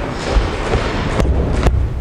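Boxing gloves striking open palms: two sharp slaps about half a second apart in the second half. Feet thud on a wooden floor underneath.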